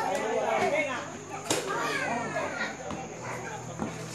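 Several young girls' voices calling out and chattering over one another, team chatter from the players at a youth softball game. A single sharp knock sounds about one and a half seconds in.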